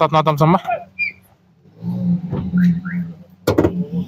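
Men's voices talking in the background, with one sharp knock about three and a half seconds in.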